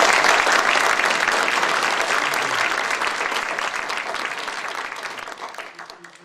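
Audience applauding, the clapping fading gradually away to almost nothing.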